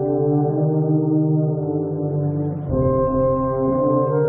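Wind band with tuba, French horns and trumpets playing slow, sustained brass chords with a strong low bass line; the chord changes about two and a half seconds in.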